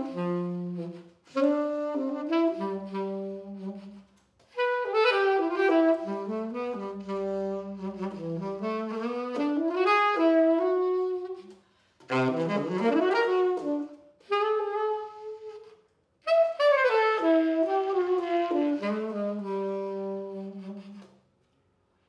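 Selmer Paris Mark VI tenor saxophone (serial 115xxx) played solo: melodic phrases separated by brief pauses for breath, with a quick run of notes about halfway through.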